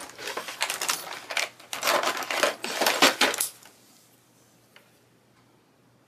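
Clatter of small hard objects, pens and craft tools rattled as one is picked out, stopping about three and a half seconds in; one light tick follows.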